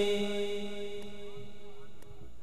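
The last held note of a sung Pashto naat, one steady vocal drone that fades away over the two seconds.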